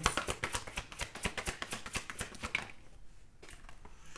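A deck of tarot cards being shuffled by hand: a rapid run of short card clicks for about two and a half seconds, then a few scattered clicks as the shuffling slows.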